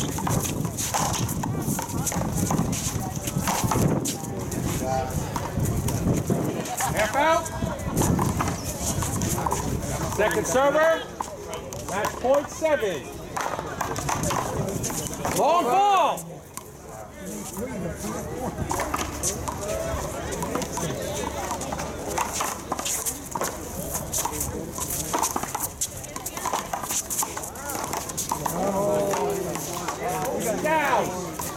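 One-wall paddleball rally: solid paddles striking a rubber ball and the ball smacking the concrete wall, a string of sharp, hollow knocks, with short shouts from players and onlookers in between.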